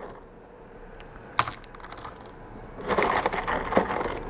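Small pieces of black lava rock clicking together as they are picked out by hand, mixed with the crackle of dry sphagnum moss being pushed aside. A single click about a second in, then a quick run of small clicks near the end.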